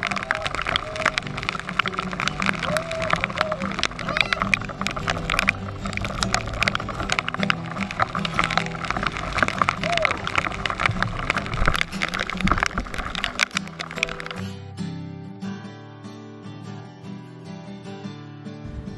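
Background song over the noise of heavy rain and wind on the water. About three-quarters of the way through the rain noise cuts off suddenly, leaving the music alone.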